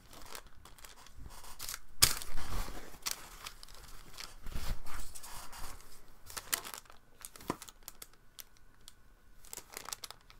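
Paper towel crinkling and rustling as it is handled, with scattered light clicks. Loudest about two seconds in and again around five seconds.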